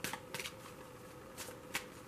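A deck of tarot cards being shuffled by hand off-camera: a few short, soft bursts of cards slapping and sliding, spaced irregularly, over a faint steady hum.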